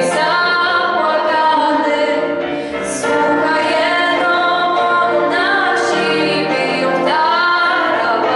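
A girl singing a song into a microphone, her voice amplified, with held and gliding sung notes.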